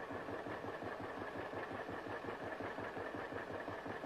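John Deere two-cylinder tractor engine running at a steady, even beat, heard on an old film soundtrack.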